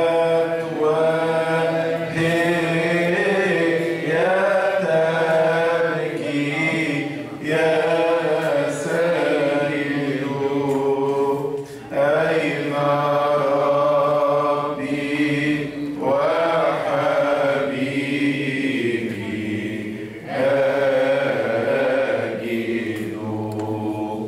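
Coptic Orthodox hymn chanted by a man into a handheld microphone, in long drawn-out phrases of a few seconds each with brief pauses for breath between them.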